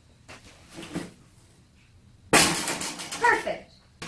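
Plastic clothes hangers and a tulle costume being handled: soft clicks and rustling, then a sudden loud rustle and clatter about two seconds in. A short vocal sound comes near its end.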